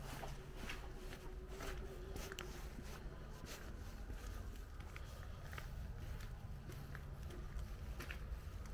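Faint footsteps at an uneven pace over a steady low rumble.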